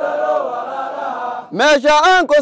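Chanted song sung by voice, with a softer held line, then a loud voice coming back in about one and a half seconds in.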